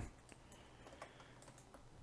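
Near silence with a few faint clicks of a computer keyboard.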